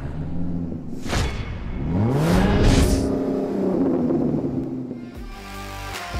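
Produced intro sting: a recorded engine revving up, its pitch rising and then held, with whooshing sweeps. Music with a steady beat comes in about five seconds in.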